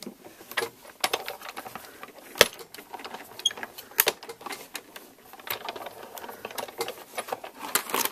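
Sizzix Big Shot die-cutting machine being hand-cranked, pulling a plate sandwich with a stitched metal die through its rollers to cut cardstock. It makes a continuous run of irregular clicks and knocks, with a sharper knock about two and a half seconds in.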